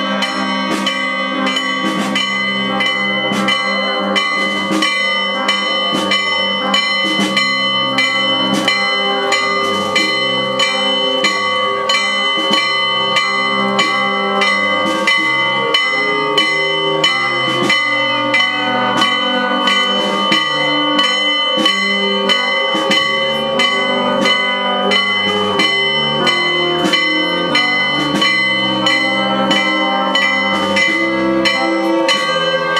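Church bells pealing, struck rapidly and repeatedly, each stroke ringing on beneath the next, a festive peal for a saint's procession.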